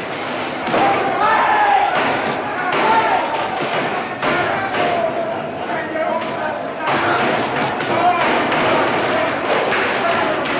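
Men shouting and yelling without clear words throughout, over repeated thuds and slams of a fistfight.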